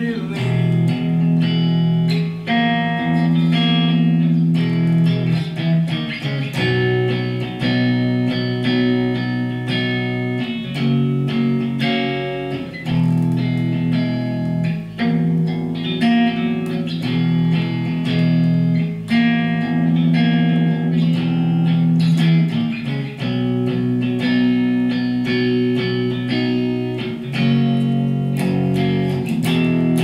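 Clean electric guitar played with the fingers: ringing chords moving between an E major triad over an E bass note, a G-flat major chord and E major.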